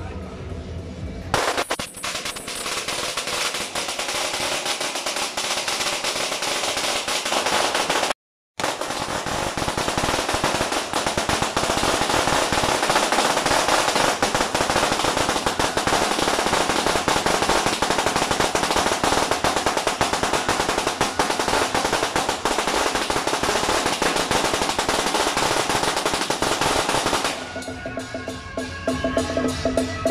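A long string of firecrackers going off in a rapid, unbroken crackle. It starts about a second in, cuts out completely for a moment about eight seconds in, and stops just before the end.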